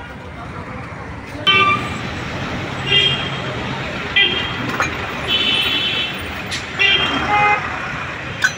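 Vehicle horns honking over steady street traffic noise: several short toots, with longer ones in the second half.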